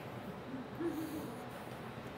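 Quiet studio room tone, with a faint, brief low vocal sound like a hummed 'hmm' about half a second to a second in.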